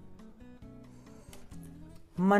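Quiet background music: a plucked guitar melody moving note to note.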